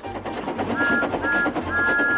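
A steam engine's whistle tooting three times, two short toots and a longer third, over background music.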